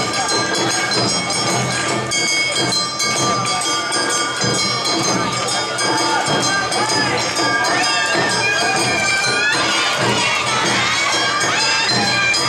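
Awa Odori dance music with held piping tones, mixed with crowd noise. From about two-thirds of the way in, many high-pitched shouted calls rise over it.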